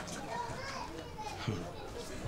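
Faint background voices in a pause between lines of dialogue, like distant children at play.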